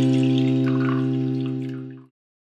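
A strummed acoustic guitar chord ringing out and slowly fading, dying away at the very end. A faint trickle of liquid being poured into a strainer comes in about halfway.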